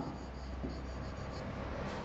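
A pen writing on a board: soft, steady scratching as numbers are written, over a low hum.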